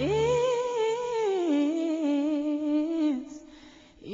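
Slow female pop vocal with little accompaniment: one voice swoops up into a long held, wavering note that steps down in pitch, then fades away about three seconds in.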